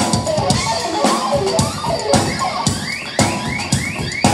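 Live rock band playing, with the drum kit to the fore: fast bass drum and snare hits and cymbals under electric guitar notes. A run of short rising high notes repeats in the second half.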